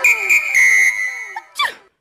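Electronic cartoon sound effect: three quick high beeps, the third held and fading, then a very fast falling whistle about a second and a half in.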